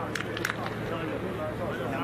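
Football match broadcast sound with indistinct voices over a steady background hum, and a few short, sharp clicks in the first half second.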